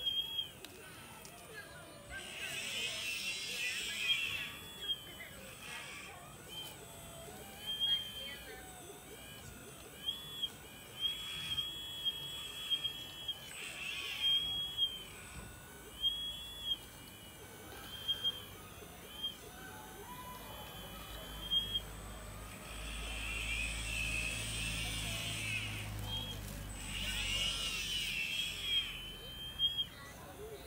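RC model excavator's motors whining in short high-pitched runs that start and stop as the boom, arm and bucket are worked, with scattered clicks. The motor noise gets louder and rougher twice, with a low rumble under it near the end.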